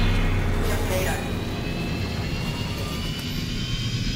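Designed sci-fi engine sound of an animated hover car: a steady low rumble with rushing thruster noise, and a thin high whine rising slowly in pitch.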